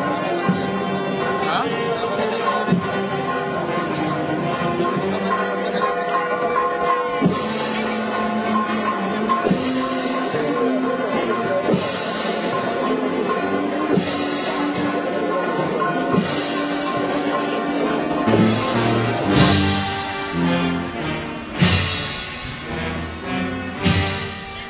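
Brass band playing a slow processional march with long held notes and a drum-and-cymbal beat about every two seconds, the strikes growing heavier and more frequent near the end.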